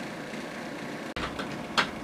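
Steady low hiss of background room noise, with a faint click about a second in and a short soft rush of noise near the end.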